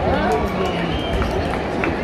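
Crowd chatter: many voices talking at once in a large open square, steady throughout.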